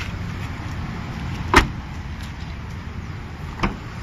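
Car doors of a Kia Picanto being shut: a loud thud about one and a half seconds in and a lighter one about two seconds later, over a steady low background rumble.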